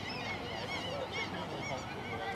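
Birds calling in the background: many short chirps repeat over low outdoor ambience.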